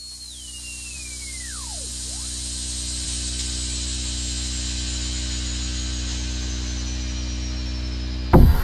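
Electronic song intro: a synthesizer drone swelling up, with a high whine that falls steeply in pitch within the first two seconds and a second high tone that slowly sinks throughout.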